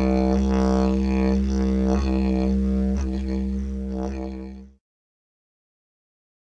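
Didgeridoo music: one low, steady droning note with shifting overtones above it, cutting off abruptly near the end.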